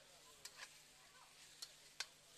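Near silence: a faint hiss of chicken sautéing in a wok over a gas flame, with three light clicks.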